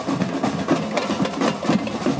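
Street drum band playing a quick, steady beat of drum strikes.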